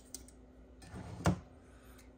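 Aluminium soda can knocking against the plastic inside of a mini fridge as it is lifted out and set down: a sharp click just after the start and a louder knock about a second and a quarter in.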